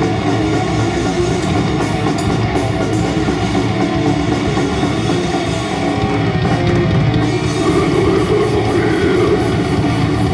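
A heavy metal band playing live through an instrumental passage with no vocals: distorted electric guitars over a pounding drum kit. It grows a little louder about seven seconds in.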